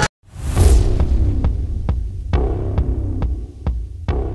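Trailer sound design: after a sudden cut to silence, a falling swoosh lands on a deep boom. A low rumbling drone follows, with a sharp, clock-like tick a little over twice a second starting about a second and a half in.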